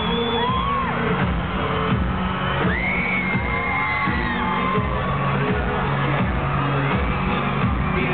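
A live pop ballad with a boy band singing and a steady beat, played loud through an arena PA, with fans screaming shrilly over it. Long high-pitched screams ring out at the start and again from about three seconds in.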